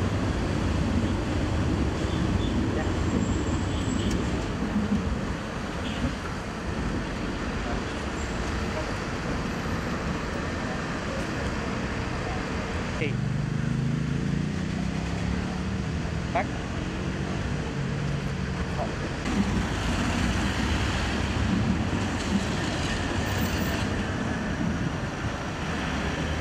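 City road traffic: a steady wash of passing cars and engines, with people talking in the background. The traffic thins for a few seconds midway, where low voices come through more clearly.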